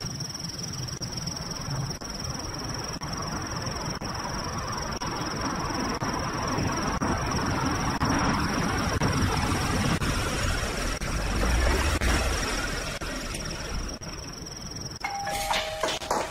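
A car approaching, its rumble swelling to a peak about eleven seconds in, over a steady faint high tone. Near the end a doorbell chimes two tones, high then lower.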